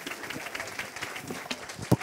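Audience applauding, a spatter of hand claps with one sharper clap near the end.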